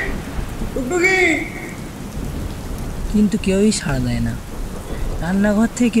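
Rain-and-thunder storm sound effect: a steady downpour hiss over a low rumble. A voice breaks in over it in a few short phrases.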